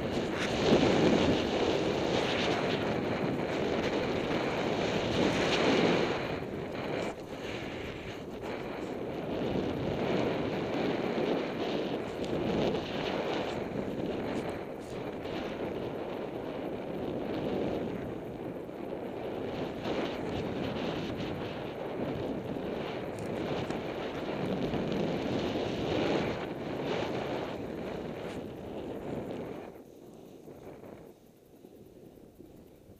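Snowboard sliding and carving over snow, a continuous rushing scrape mixed with wind buffeting the microphone. It is loudest for the first six seconds, then a little softer, and falls away right at the end.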